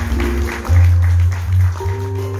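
Instrumental music from a stage keyboard, with no singing: a deep bass line under held chords and short, plucked, guitar-like notes.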